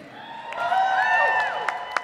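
Audience members cheering and whooping for a graduate whose name has just been called, several voices calling out in rising and falling shouts, with a few sharp claps near the end.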